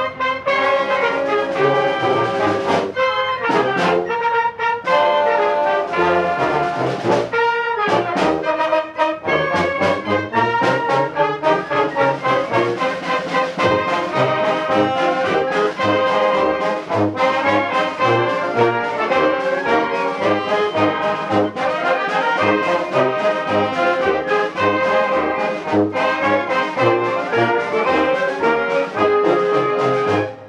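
Concert band playing a march: trombones, trumpets and other brass over woodwinds, with a bass drum marking the beat.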